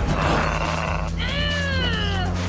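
Racing car engines running hard with a steady low drone, joined about a second in by a high squeal that slides down in pitch.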